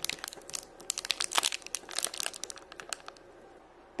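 Clear plastic candy bag crinkling as it is handled, a run of irregular crackles that dies away about three-quarters of the way through.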